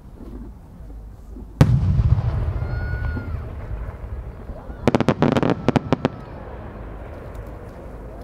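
8-go senrin-dama aerial firework shell: one loud boom with a long rolling echo about one and a half seconds in as the shell bursts. About five seconds in comes a quick cluster of sharp crackling pops as its many small sub-shells go off, over by about six seconds in.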